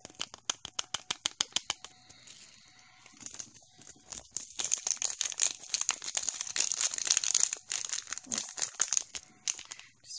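Teal heart glitter being handled and shaken out of its packet into a bowl of glitter mix: rapid light crinkling and ticking, quieter for a moment, then a busier spell of crinkling and rustling in the second half.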